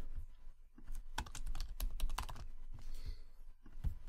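Typing on a computer keyboard: short runs of key clicks, mostly in the middle, with a few more near the end.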